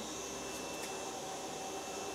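Quiet, steady background hiss with a faint, thin high-pitched whine running through it; no sneeze or other event.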